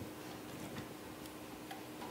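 Faint clock ticking, about two ticks a second, over a low steady hum.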